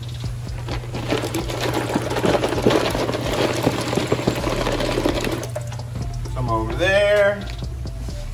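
Water pouring from a plastic pitcher into a tub of water, splashing for about four seconds and then stopping.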